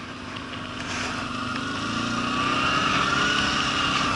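Quad bike engine running under way, its pitch and level rising steadily over a few seconds as it speeds up.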